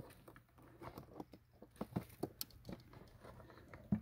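Faint handling sounds of a plastic trail camera being slid out of a cardboard milk-carton housing: irregular light clicks, scrapes and rustles.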